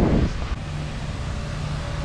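Wind buffeting the microphone, with a steady low engine hum that comes in about half a second in.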